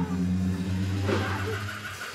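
A low, steady droning tone with a fainter overtone above it, stopping shortly before the end.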